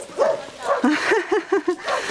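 Dog barking: a quick run of about five short barks, starting about a second in.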